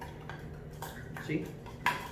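Muddler knocking and grinding lemon juice and sugar in a metal cocktail shaker tin: a run of irregular clinks and scrapes, about five in two seconds, the sharpest near the end.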